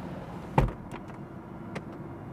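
BMW M440i convertible's electric fabric soft top raising while the car rolls along: a low, steady, near-silent hum, with a soft thump about half a second in and a light click near the end.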